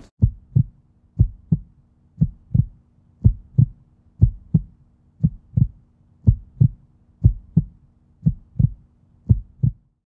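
A heartbeat sound effect: paired low thumps, about one pair a second, ten in all, over a faint steady low hum.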